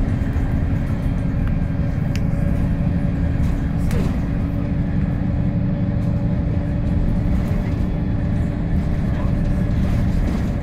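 VDL SB200 Wright Commander single-deck bus heard from inside the cabin while driving: a steady engine and road drone with a constant whine. There is a brief rattle about two seconds in and another about four seconds in.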